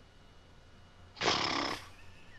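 A person's short, sharp breath out, a puff of air about a second in that lasts about half a second, against quiet room tone.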